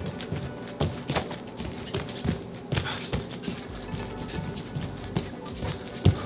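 Bare feet thudding and slapping on a padded training-mat floor in quick, irregular shuffling steps, over background music.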